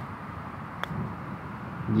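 A single sharp click of a golf club striking a golf ball, a chip from the fringe, a little under a second in, over steady outdoor background noise.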